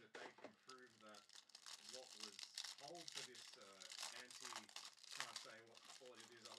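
Clear plastic wrapper of a trading-card pack crinkling and tearing as it is peeled open by hand, quietly.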